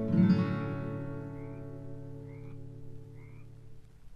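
The song's final chord, led by acoustic guitar, is struck once and left to ring, dying away slowly. Faint short chirps repeat about once a second over the fading chord.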